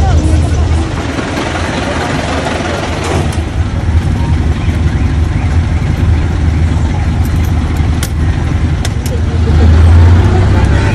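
Jeepney engine running with a steady low drone, heard from inside the passenger cabin, with people talking over it. A few sharp clicks come near the end.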